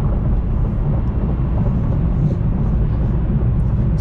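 Steady low rumble of a Chevrolet Camaro ZL1's supercharged V8 and its tyres on the road, heard from inside the cabin while cruising at highway speed.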